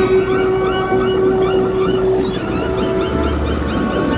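A tugboat's whistle sounds one long steady note that stops a little over two seconds in, while gulls call over and over. A low hum comes in near the end.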